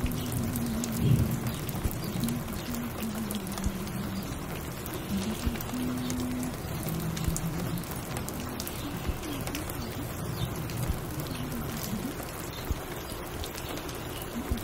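Steady rain pattering, with scattered small drips and clicks. Under it runs a low, muffled pitched sound whose notes step up and down.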